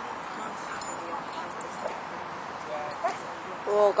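Steady outdoor background hiss with a few faint, short dog yips and whines in the last second or so.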